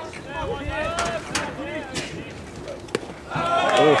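A single sharp pop of a pitched baseball landing in the catcher's mitt about three seconds in, amid spectators' chatter that turns into louder calling out just after.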